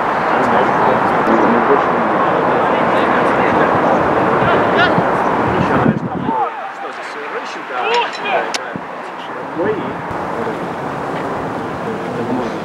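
Outdoor football-pitch sound: players' shouts over a steady rush of noise. About six seconds in it cuts to a quieter stretch with scattered shouts across the pitch and one sharp knock, like a ball being kicked.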